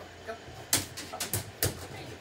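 A dog's claws and feet clattering on an aluminum jonboat hull as it scrambles up over the side: a quick run of sharp knocks in the second half.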